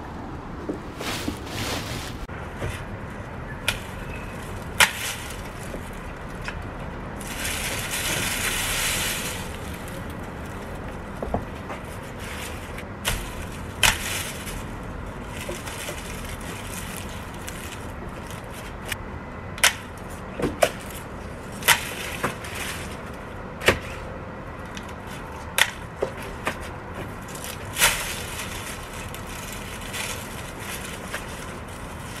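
Garden loppers snipping through thick zinnia stems: a run of sharp clicks, several in the last third. About eight seconds in there is a longer rustle of foliage being handled.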